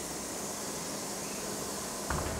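Steady, even hiss of a city bus interior's ambient noise, with no distinct engine note or other event standing out.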